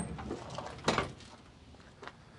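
Tailgate of a 1971 Ford Bronco being swung down open, with a single short clunk about a second in as it comes to rest.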